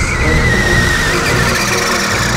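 A car's tyres squealing in a long screech, its pitch sliding slightly down, over theme music.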